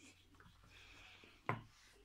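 Faint rubbing of fingertips over skin slick with a sheet mask's slimy serum, with one short wet click about one and a half seconds in.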